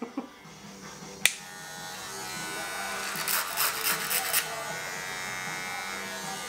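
Electric hair clipper running with a steady buzz as it is worked through hair. A single sharp click comes about a second in, and the buzz turns rougher and louder from about three to four and a half seconds in.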